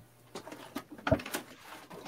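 A few sharp wooden knocks and creaks from an old treadle sewing machine's wooden table being pried apart. The loudest knock comes about a second in.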